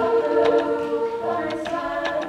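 A cappella vocal group singing held chords, a lead singer's voice in front of the group, with a few short sharp ticks over it.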